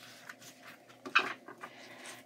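A deck of tarot cards being shuffled by hand: soft, scattered card clicks and rustles, with one sharper snap just over a second in.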